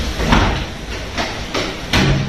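Frameless glass balcony panels rolling along their track on small wheels as they are pushed by hand, with a few sharp knocks of glass and frame meeting.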